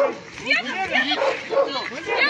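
Several agitated voices shouting over one another during a scuffle with police, mixed with short, high yelping cries.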